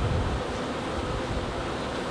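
Honeybees buzzing steadily around an open hive, with wind rumbling on the microphone about the first half-second.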